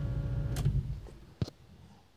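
Toyota 1UZ-FE V8 idling with a steady low rumble that fades away over the first second or so. A faint click comes about half a second in and a sharper click just before halfway through the second.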